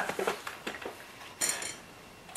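Small plastic model parts and a little paint-marker bottle being handled and set down on a cutting mat: a few light clicks and taps, then a brief sharper clatter about one and a half seconds in.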